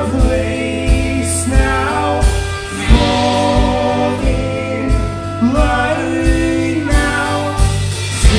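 Live band playing a song: electric guitar, bass and drum kit with a steady beat, and a voice singing over it.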